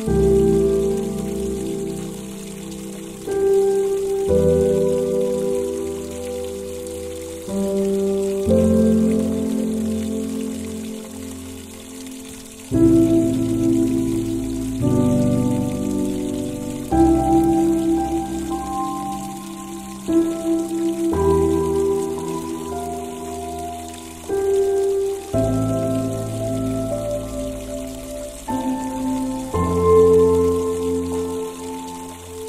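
Slow, calm piano music, a new chord struck every two to four seconds and left to fade, over a steady soft hiss of rain.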